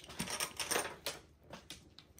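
Scattered sharp clicks and clacks of mahjong tiles and plastic chips being handled on a table, about five in two seconds, fainter toward the end.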